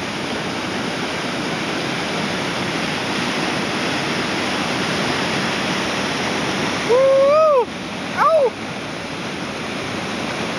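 Steady rush of a whitewater creek rapid. Twice near the end, about seven seconds in and again a second later, a person gives a loud, short whooping shout that rises and falls in pitch.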